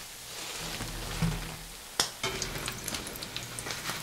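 Hot oil sizzling faintly around small batter-coated anchovies deep-frying in a wok. About halfway in it turns sharply to a denser crackle of many small pops.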